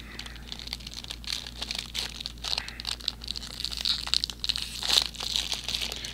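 Plastic wrapper of a stroopwafel being opened by hand, crinkling and tearing in a run of irregular crackles.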